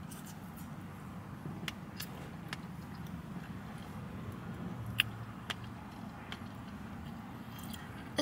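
A person quietly chewing a mouthful of cake, with a few faint clicks from the plastic fork and container, the loudest about five seconds in, over a low steady hum inside a car's cabin.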